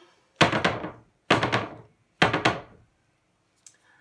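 A 16 by 20 stretched canvas wet with poured acrylic paint lifted and dropped flat onto the work table three times, about a second apart, each drop a loud thunk with a short ring-out. The canvas is being knocked to bring air bubbles up out of the paint.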